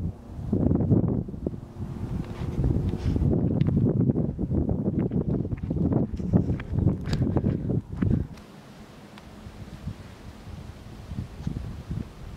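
Wind buffeting the camera microphone in gusts, a low rumbling noise that cuts out abruptly about eight seconds in, leaving a quieter steady hiss.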